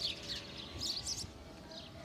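Birds chirping faintly, a few short high calls in the first second or so, over quiet outdoor ambience.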